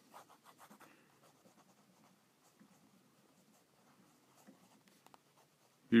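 Faint scratching of a Pentel Twist-Erase mechanical pencil with 0.5 mm HB lead sketching on a paper Post-it note. There is a quick run of short strokes in the first second, then only scattered light strokes.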